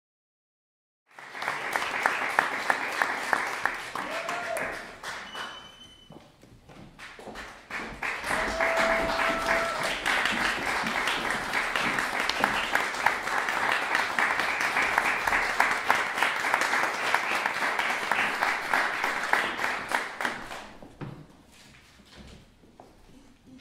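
Audience applauding. The clapping starts about a second in, eases off for a moment, then builds again and dies away near the end.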